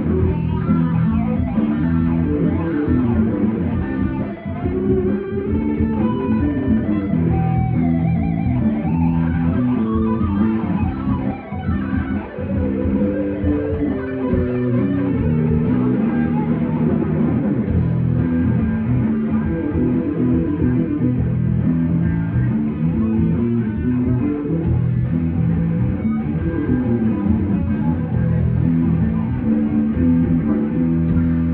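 Live rock band playing an instrumental passage on electric guitar, bass guitar and drums, with no vocals.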